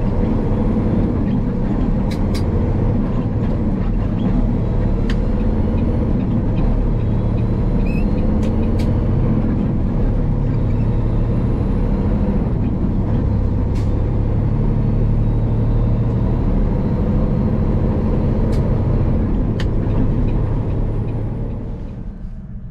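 Heavy truck, a 2021 Peterbilt, running steadily at road speed, heard from inside the cab: a loud, even engine and road drone, with a few faint clicks.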